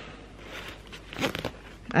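Zipper on a thin nylon packable backpack being tugged open, with a short rasp a little past the middle and the fabric rustling. The bag has no structure, so the pull drags the loose fabric along with the slider.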